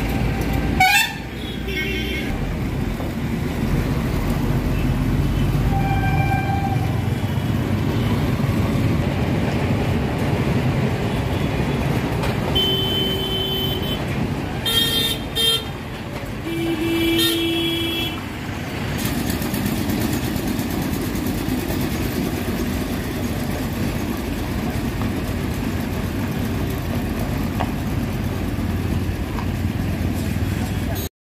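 Street traffic running steadily, with vehicle horns honking: one short toot early, then a cluster of several short honks near the middle.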